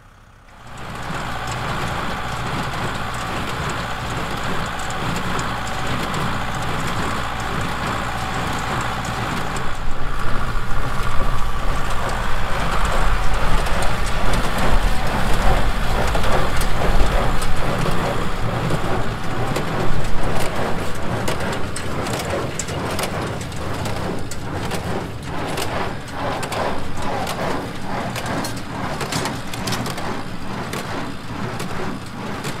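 Tractor engine running under load while driving a Ford small square baler, the baler's plunger knocking in a steady rhythm as it packs hay into bales. The sound starts abruptly about a second in and gets louder around ten seconds in.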